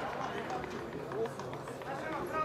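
Shouted voices carrying across an open football pitch: players and a coach calling out during play, too distant to make out words, with a few short knocks such as footsteps or a ball being played.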